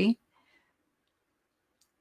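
A woman's word trailing off, then near silence (the audio seems gated) with a faint click near the end.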